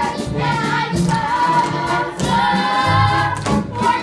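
A cast chorus singing a show tune with musical accompaniment, with long held notes about two seconds in.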